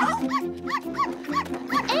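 Cartoon puppies yipping in a quick run of short high calls, about three a second, over background music.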